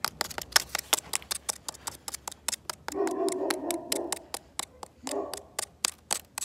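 Plastic cutlery stabbing and scraping into hard dirt in a fast run of sharp clicks, about six a second. A short hum-like voice sound comes about three seconds in and again briefly near the end.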